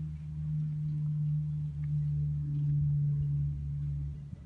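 A steady low hum at one unchanging pitch, with a fainter, deeper hum beneath it.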